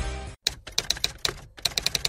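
Typewriter keys clacking in a quick, irregular run of strikes, starting just after the end of a music sting, which cuts off about a third of a second in.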